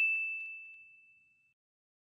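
A single clear, high ding, the notification-bell sound effect of a subscribe-button animation, fading away over about the first second and a half.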